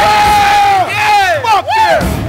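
A voice shouting over a live crowd: one long held call, then several shorter calls that rise and fall in pitch.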